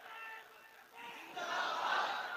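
A gathering of men's voices chanting together in a hall, dropping to a lull and then swelling loudly again about one and a half seconds in.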